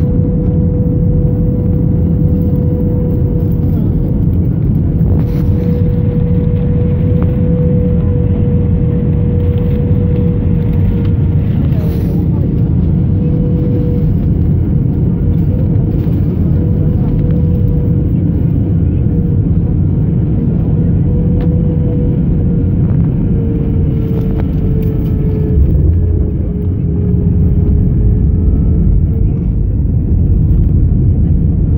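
Cabin noise of a jet airliner on final approach and landing: a loud, steady rumble of engines and rushing air with a steady hum over it. About four seconds before the end the sound dips briefly and then comes back stronger as the aircraft touches down and the spoilers rise.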